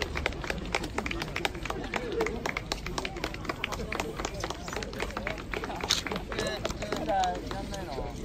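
People talking outdoors over a rapid run of sharp taps, about four or five a second, with a voice calling out clearly near the end.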